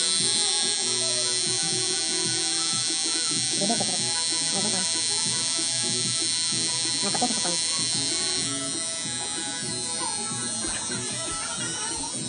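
Rotary tattoo machine buzzing steadily as it inks the skin.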